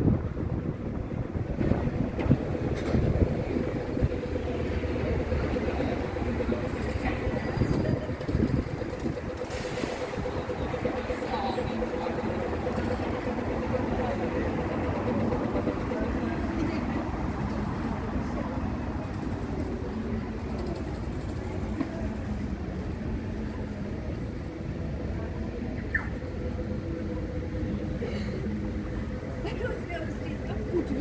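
City street ambience: steady traffic noise from passing vehicles, with a steady engine hum through the first half and passers-by talking indistinctly.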